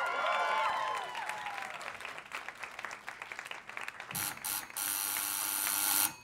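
Live audience cheering and applauding at the end of a song, the cheers strongest in the first second and the clapping thinning out over the next few seconds. About four seconds in come a few sharp strokes, then a steady hiss to the end.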